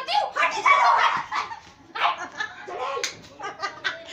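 High-pitched voices of girls and women talking and calling out over one another, with a few sharp slaps mixed in, one about three seconds in.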